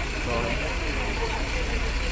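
Articulated city bus idling at a stop: a steady low engine rumble, with people's voices over it.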